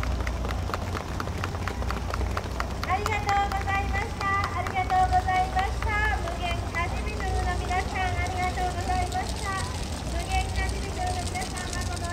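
High-pitched voices calling out over a steady low engine hum, with a run of quick, regular clacks, about five a second, in the first three seconds.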